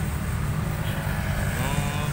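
Road traffic going by: a steady low engine rumble from motorcycles and other vehicles on the street.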